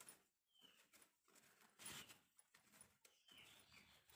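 Near silence, with faint rustling of cotton cloth as it is bunched along an elastic being worked through its casing with a safety pin.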